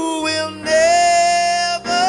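A woman singing a gospel praise song into a microphone over her own electronic keyboard chords. She holds one long note for about a second, then starts a new phrase near the end.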